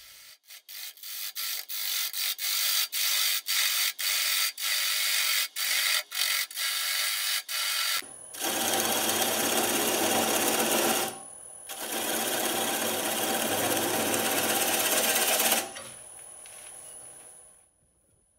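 Bowl gouge cutting the tenon off the base of a spalted beech bowl spinning on a lathe. For the first half there is a hissing shaving sound with many brief breaks as the tool skips on and off the wood. After that come two longer, louder stretches of cutting with a short pause between them. Near the end the cutting stops, leaving a faint high, steady whine.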